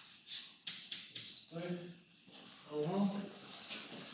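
Chalk writing on a blackboard: a quick run of short scratches and taps through the first second or so, then a voice murmuring briefly twice.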